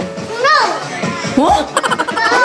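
Young children's voices calling out in short high rising-and-falling cries, with music playing in the background.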